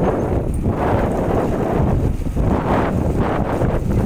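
Wind buffeting the microphone: a loud, low rush without any tone that swells and eases several times.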